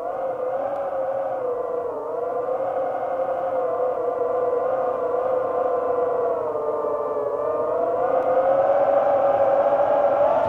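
A sustained, wavering pitched drone with overtones, sliding slowly up and down in pitch without a break. It grows louder and rises in pitch toward the end.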